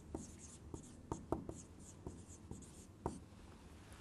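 Faint squeaks and taps of a dry-erase marker writing on a whiteboard, a quick irregular run of short strokes as letters are drawn.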